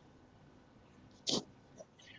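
Near silence over a video-call line, broken about a second and a quarter in by one short, sharp breath noise into a microphone, with a faint click shortly after, just before a person starts to speak.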